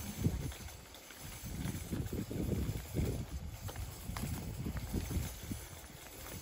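Footsteps of someone walking along a paved road: an irregular run of dull steps.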